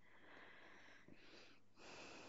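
Near silence, with faint breathing.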